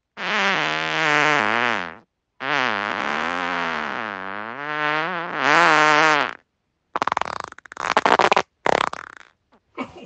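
Farts: a pitched fart of about two seconds, then a longer one of about four seconds whose pitch wavers up and down. After that come short, sputtering, crackly bursts.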